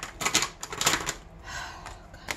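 Plastic gel pens being handled on a desk: a quick run of light clicks and taps in the first second, then a short sliding rustle.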